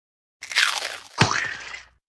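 Cartoon sound effect of a bite into a crisp taco shell: two short crunches, the first about half a second in and the second, with a sharp start, just after a second.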